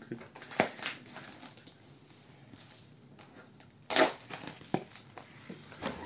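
Scissors cutting through packing tape on a cardboard box: a few short sharp snips and clicks in the first second. About four seconds in there is a loud sharp knock as the box is handled, with smaller knocks after it.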